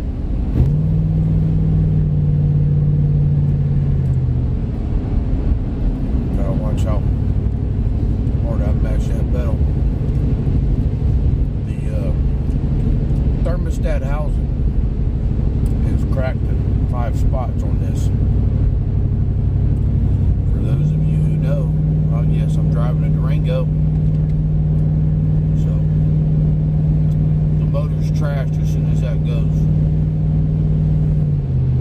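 Car cabin noise while driving: a steady road and engine rumble. A low steady drone drops out about four seconds in and comes back about twenty-one seconds in.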